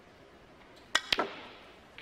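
Snooker balls striking: two sharp clicks about a second in, a fifth of a second apart.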